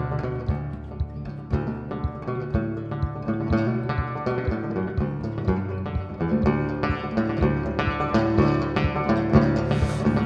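Banjo played solo in an instrumental break with no singing: a steady stream of picked notes over a low thump about twice a second.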